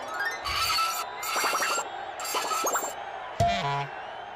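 Cartoon background music with sound effects: three bursts of hiss with light clinks, then about three and a half seconds in a thud and a falling electronic tone that settles low, a robot powering down as it freezes up.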